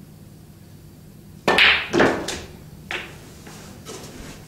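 A snooker shot on a full-size table: a sharp click about one and a half seconds in, a second loud click half a second later, and a fainter knock near three seconds, as the cue strikes the cue ball and the balls collide. The shot is played with stun.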